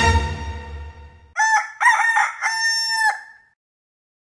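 Music fading out, then a single rooster crow: a few short notes running into one long held note, ending about three seconds in.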